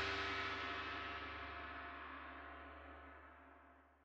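The ringing tail of a struck, gong-like metallic sound with many overtones, fading steadily away to silence near the end.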